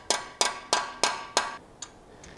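Hammer tapping a screw extractor (easy-out) held in a socket, driving it into the drilled hole of a broken aluminum oil pan bolt. Five ringing metal-on-metal strikes about three a second, then a lighter tap near the end.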